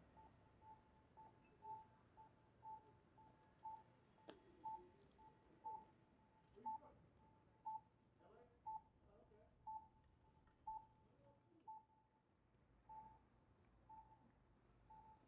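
Pedestrian crossing signal beeping faintly: short beeps all on one pitch, about two a second, every other beep louder.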